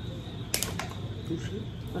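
A sharp crack about half a second in, followed by a few small clicks, as a cooked shellfish shell is broken apart by hand.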